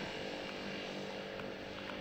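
Steady street background noise with distant traffic running, with a few faint clicks.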